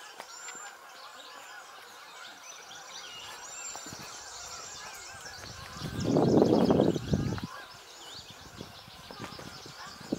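Many small birds chirping and singing throughout. About six seconds in comes a loud, low rushing rumble lasting about a second and a half.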